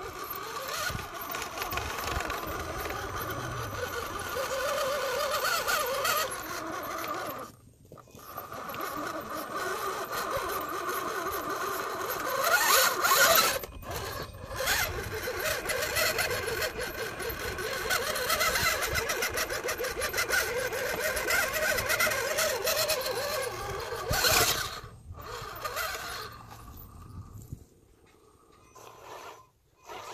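Radio-controlled rock crawler's brushless electric motor and geared drivetrain whining as the truck crawls over rock. The pitch rises and falls with the throttle and climbs sharply once in the middle, with a few brief breaks.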